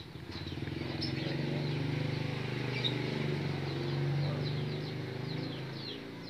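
A motor vehicle engine running steadily, swelling up over the first second and fading near the end as it goes by, with birds chirping faintly over it.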